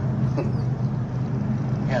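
Car engine and road noise heard from inside a moving car's cabin, a steady low drone.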